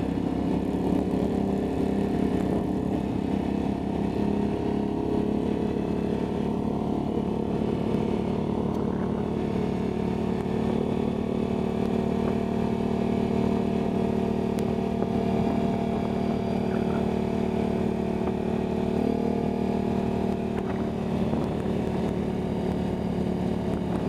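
Snorkelled ATV engine running steadily at cruising speed, heard close up from the riding quad itself, with little change in pitch.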